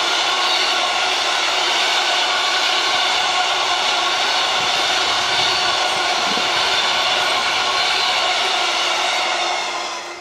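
The wagons of a long intermodal freight train rolling past close by: steady, loud wheel-on-rail noise with a whining ring in it. It falls away at the very end as the last wagon clears.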